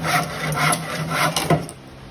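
Hand saw cutting through a wooden board in rasping back-and-forth strokes, about two a second, which stop shortly before the end.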